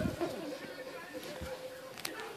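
Handling noise from a phone camera being swung round, with a bump at the start, then a faint steady hum.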